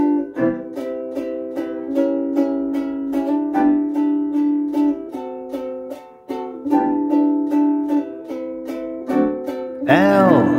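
Instrumental jazz: a soprano ukulele strumming steady chords, about three strums a second, over piano chords played on a Roland digital keyboard.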